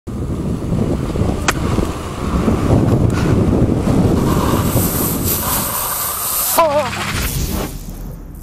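Wind buffeting a camera microphone on a moving e-bike, with tyre rumble from the paved path. There is a sharp click about one and a half seconds in, and a brief wavering tone near the end.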